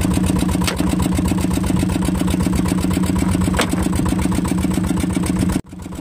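Fishing boat's engine running steadily, driving the drum net hauler as it reels a fishing net aboard, with two brief clicks along the way. The sound cuts off abruptly near the end.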